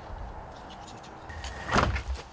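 A low, steady rumble, then one short loud knock near the end as a man climbs into a truck's driver seat.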